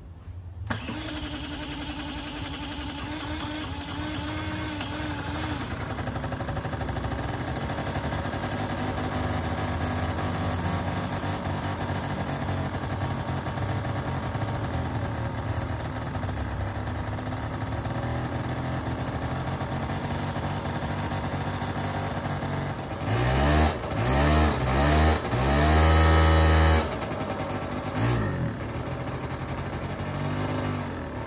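1986 Honda Gyro's small two-stroke scooter engine, its carburettor just cleaned and reassembled after long storage, catches a little under a second in and settles into a steady idle. Near the end the throttle is blipped about four times, the last rev held for about a second, followed by a shorter rev and one more at the very end.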